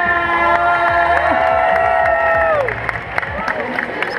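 Crowd cheering as the robot fight ends, with several voices holding long whoops that drop in pitch as they trail off.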